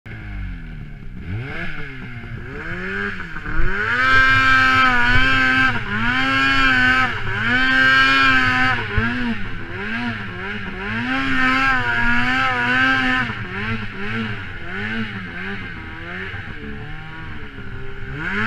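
2013 Polaris Pro RMK snowmobile's two-stroke engine ridden through deep snow. The pitch climbs over the first few seconds, then rises and falls about once a second as the throttle is worked on and off.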